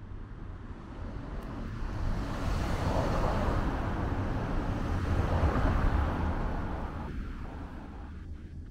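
A small kei car passing close by and driving away down the street. Its tyre and engine noise rises over the first few seconds, is loudest in the middle, then fades as the car pulls ahead.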